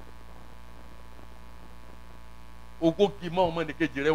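Steady electrical mains hum from the sound system, heard on its own during a pause, until a man's amplified speaking voice resumes about three seconds in.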